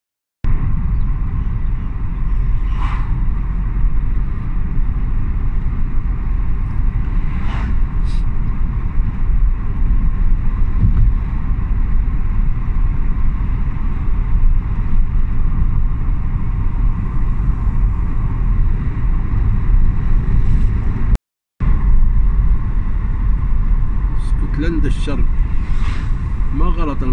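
Car driving along a road: a steady low rumble of engine and road noise that briefly cuts out about 21 seconds in.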